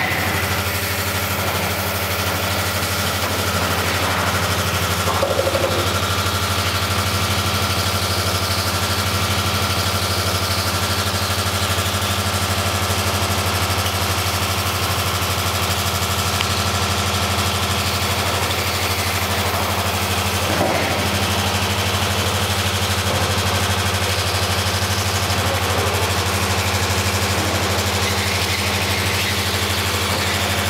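Resistance roll seam welding machine running with a steady, constant low hum while its copper wheel electrode welds the seam of a thin stainless steel water heater inner tank.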